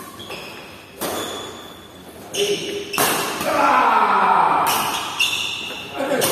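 Badminton rally: several sharp racket hits on the shuttlecock, with rubber-soled shoes squeaking on the wooden court floor. Voices shout through the middle of the rally.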